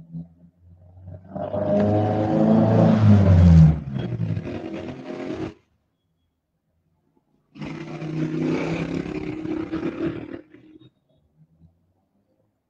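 Recorded dinosaur roar sound effect, heard twice. The first roar is long and falls in pitch; the second, shorter one follows after a pause of about two seconds.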